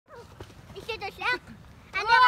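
Children's voices at play: a few short, high-pitched cries or squeals about a second in, then a louder, longer cry at the end.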